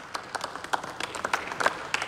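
Applause from members in the parliamentary chamber: a group clapping, with separate claps irregularly spaced, in the pause between two sentences of a speech.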